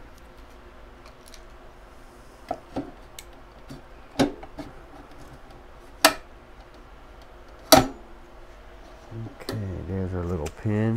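A few sharp knocks and clicks of the NAS's plastic-and-metal housing as it is worked and tapped with a wooden tool handle, the loudest about four, six and eight seconds in. Near the end, a person hums briefly without words.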